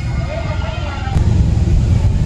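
People talking in the background over a low rumble that grows louder about a second in.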